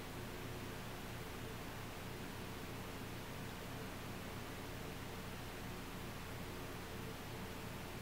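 Steady faint hiss with a low hum: room tone, with no distinct sound standing out.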